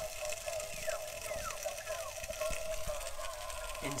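Chicken sizzling in a Ridge Monkey toastie pan on a gas hob, a steady hiss.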